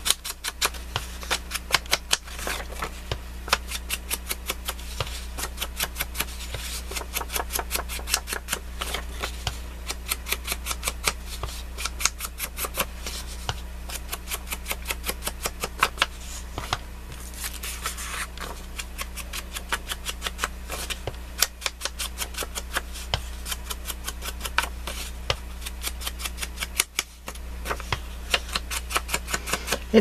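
Rapid repeated tapping of a small ink dauber against the edges of thin book-page paper on a cutting mat, several quick dabs a second with a short break near the end.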